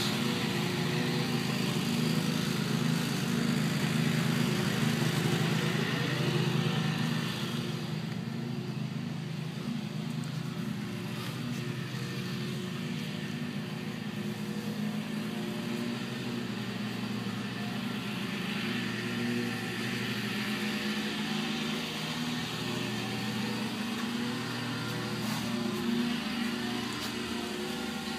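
An engine running steadily, a low drone holding a few steady pitches, which gets somewhat quieter about seven seconds in.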